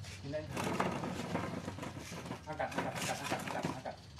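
Crinkling and rustling of a black plastic polybag of soil being handled, with indistinct voices talking at times.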